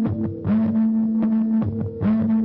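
Live emoviolence band playing an instrumental passage on electric guitars and drums: a loud held note that slides down in pitch and repeats about every second and a half, with drum and cymbal hits.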